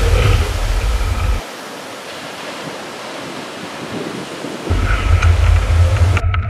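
Wind buffeting a board-mounted action camera's microphone, mixed with the rush of sea water past a kite foilboard. The low buffeting drops away about a second and a half in and comes back near the end, leaving a steady hiss in between.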